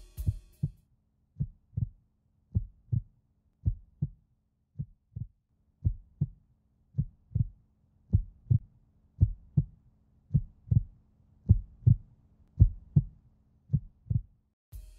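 Heartbeat sound effect in a film soundtrack: paired low thuds, lub-dub, about once a second, growing louder, over a faint steady low drone.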